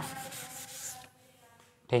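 A brief rubbing on a writing board for about a second, then it stops, consistent with wiping out a mistake in a drawn structure.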